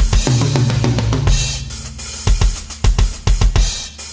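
Thrash/death metal band recording in a drum-led passage: kick drum, snare and cymbals over a low held bass note in the first second, then clusters of rapid kick-drum strikes in the second half.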